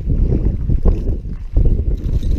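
Wind buffeting the microphone, a loud, uneven low rumble that rises and falls throughout.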